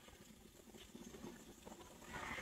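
Near silence: faint room tone with a few soft, light taps.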